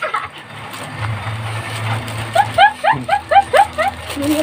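A woman's high-pitched laughter, a quick run of about eight short rising bursts in the second half, over a steady low engine hum.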